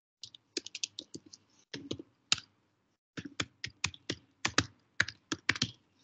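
Keys clacking on a computer keyboard as a username and password are typed into a login prompt. There are two quick runs of keystrokes with a short pause between them.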